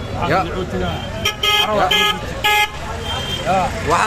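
A vehicle horn honking three short toots in quick succession, about a second and a half in, over a man's voice.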